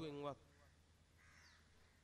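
A man's speaking voice breaks off, then near silence with a faint distant bird call a little past a second in.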